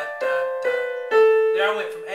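Keyboard piano playing the end of a descending white-key scale from A down to the next A, one note at a time, landing on the lower A and holding it.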